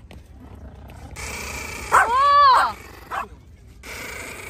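A dog vocalizing: one drawn-out call that rises and falls in pitch, lasting under a second and starting about two seconds in, then a short yip.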